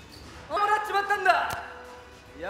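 An actor's held, wordless shout in a staged sword fight, starting about half a second in and lasting about a second. A sharp knock comes just after it.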